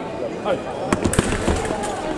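Sabre fencing exchange: a quick cluster of sharp clacks and knocks about a second in, from blades meeting and feet stamping on the piste, over a hall full of voices.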